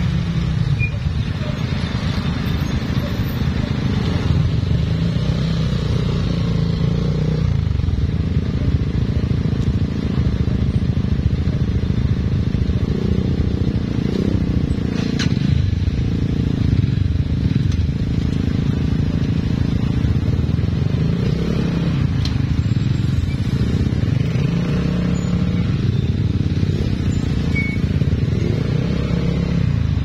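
Motorcycle engines running in slow stop-and-go traffic, a steady low drone whose pitch rises and falls now and then as the bikes creep forward.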